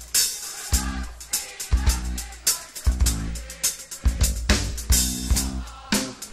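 Live rock band playing a steady groove, led by a drum kit with kick drum, snare and cymbal hits over low bass notes.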